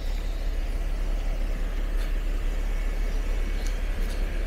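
A motor vehicle engine running steadily with a constant low rumble, amid street traffic noise.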